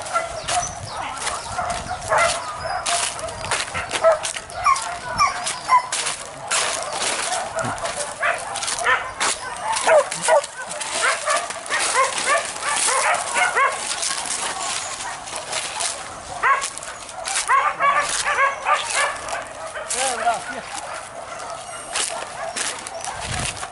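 Boar-hunting dogs yelping and barking, many short high calls overlapping one another.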